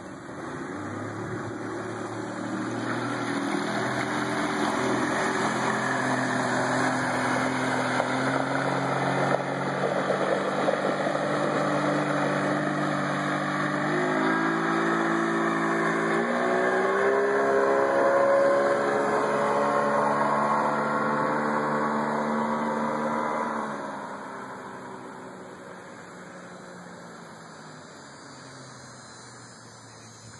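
A 40-horsepower outboard motor driving a 20-foot wooden Carolina dory under way. Its note builds, climbs in pitch in a few steps about halfway through, is loudest as the boat runs past, then drops away fairly suddenly and fades into the distance.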